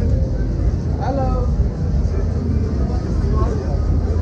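Voices of diners and passers-by chattering in the background over a steady low rumble.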